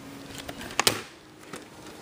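Handling noise of VHS tapes being sorted by hand: a few light clicks and knocks, the sharpest just under a second in.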